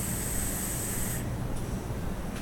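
A draw on a vape mod with a rebuildable atomizer freshly wicked with cotton candy wick: a steady high-pitched hiss of air and firing coil that stops about a second in, followed by a quieter exhale. The coil is wicked well enough to vape cleanly.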